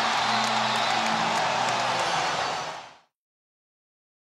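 Arena crowd cheering over music, with a steady roar that fades out to silence about three seconds in.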